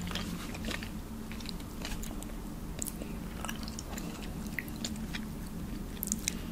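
Close-miked chewing of a juicy strawberry: a steady scatter of short, wet mouth clicks.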